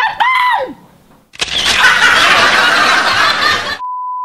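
A short high-pitched laugh, then after a brief pause a loud burst of TV static hiss lasting about two and a half seconds that cuts off suddenly into the steady, high, single-pitch test-tone beep of colour bars near the end.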